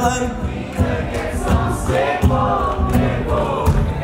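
Audience singing along in chorus with a live pop band, many voices together over the band's steady beat.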